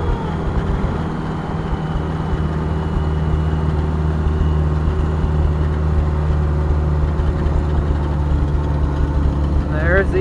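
Car engine and road noise heard from inside the cabin while driving, a steady low hum.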